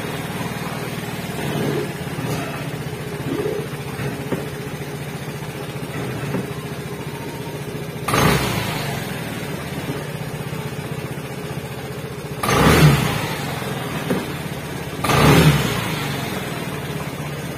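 Vespa Primavera automatic scooter's single-cylinder four-stroke engine running steadily, then revved in short surges about eight seconds in and twice near the end, the loudest at about thirteen seconds. The revving is to reproduce the fault in which the speedometer display cuts out and the check-engine light comes on at high rpm.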